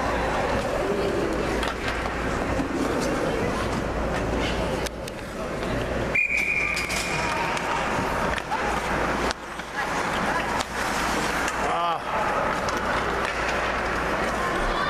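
Ice hockey rink during play: spectators talking over the scrape of skates and sticks on the ice. About six seconds in, a brief high steady tone sounds.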